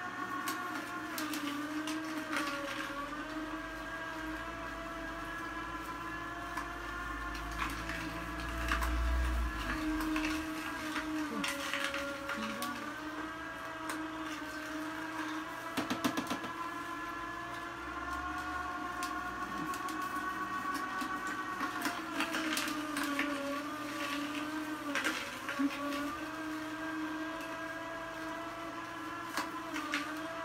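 Vertical slow (masticating) juicer running, its motor hum wavering in pitch as it presses carrot pieces, with scattered cracks and crunches as carrots are fed in and crushed.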